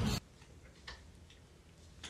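Outdoor noise cuts off abruptly just into it, leaving near silence: quiet room tone with a few faint clicks.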